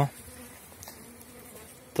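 Honey bees buzzing around their hives: a faint, steady hum.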